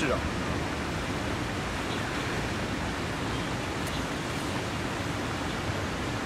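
Steady, even rushing noise with no distinct events, holding at one level throughout.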